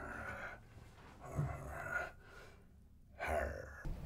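A man's breathy, muffled vocal sounds through hands cupped over his mouth, in several short bursts.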